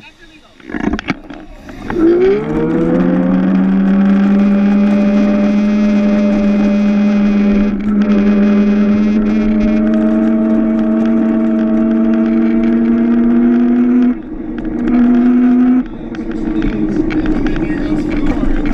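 Electric race kart's motor and drivetrain whining loudly under power, a steady pitched whine that settles in about two seconds in and creeps slowly up in pitch, then drops off and comes back in short spurts near the end as the throttle is let off and reapplied.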